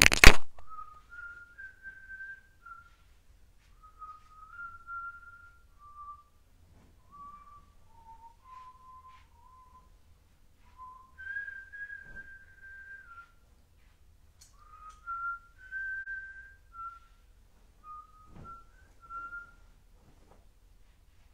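A man whistling a slow tune, one clear note at a time moving up and down in small steps, with short pauses between phrases. A couple of faint knocks come around the middle and near the end.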